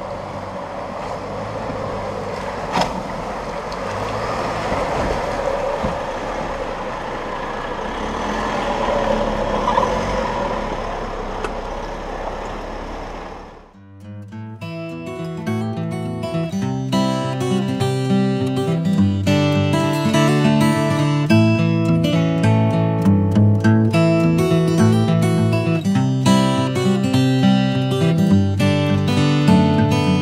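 Rushing river water and a four-wheel drive's engine as a Toyota Hilux crosses a shallow rocky creek, with one sharp click about three seconds in. About fourteen seconds in this cuts off abruptly and acoustic guitar music plays.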